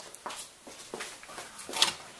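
A few light knocks and clatters of tools being moved about in a workshop while a hammer is fetched, with the sharpest knock near the end.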